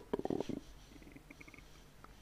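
A few faint, short clicks in the first half second, then near silence: room tone in a pause between spoken phrases.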